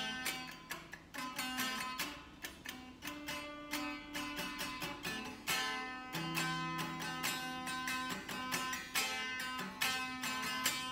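Electric guitar being picked, a steady quick run of single plucked notes and chord tones.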